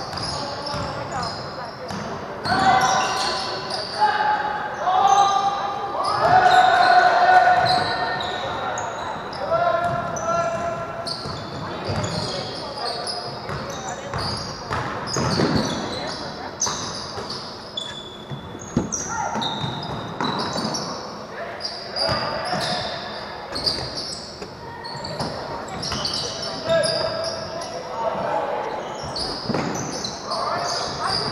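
Basketball game on a hardwood gym court: the ball bouncing repeatedly while voices call out, echoing in the large hall. The voices are loudest in the first third.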